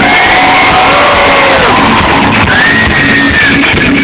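Live rock band playing loud, with electric guitar and drums, and long held notes that slide up and down in pitch.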